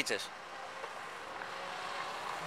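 Road traffic noise from a passing car, growing slowly louder.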